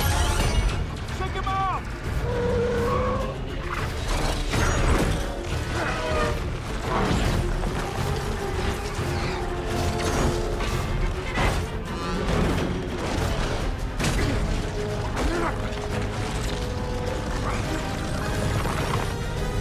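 Action-film sound mix: a busy run of mechanical clanks and whirs, hits and crashes layered over the film score, with no pause.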